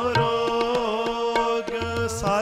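Sikh shabad kirtan: men singing over steady harmonium notes, with tabla strokes keeping the rhythm.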